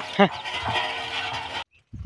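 Bullock cart drawn by two bulls rolling along a paved road, with hooves clopping and the wooden cart rattling. A brief call to the bulls comes near the start, and the sound stops abruptly near the end.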